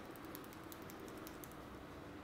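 Fingertips massaging a scalp through short hair: a quick, irregular run of faint, crisp crackling clicks.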